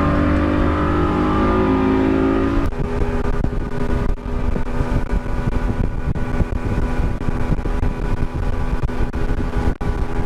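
Center-console motorboat's engine revving up under throttle, its pitch rising for the first couple of seconds, then running steadily at speed. From about three seconds in, a rough rushing noise of water along the hull runs over the engine.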